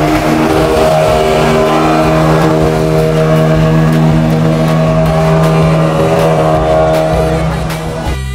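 Speedboat's outboard motor running at a steady speed, a constant even drone that eases slightly near the end.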